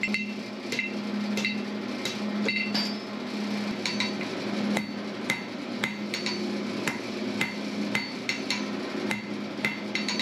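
Hand hammer striking red-hot steel on an anvil, about two blows a second at an uneven pace, each blow ringing briefly: the body of a forged gib key being hammered down to its final size. A steady low hum runs underneath.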